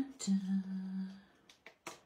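A woman humming one steady low note for about a second, then a few short light clicks as a paper sticker sheet is handled.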